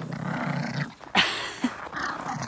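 Pomeranian growling in play for just under a second, a low rough rumble, then a single short sharp yap a little past a second in.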